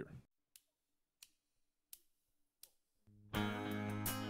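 Four sharp, evenly spaced clicks counting off the song, about two-thirds of a second apart. About three seconds in, the country band comes in together with guitars.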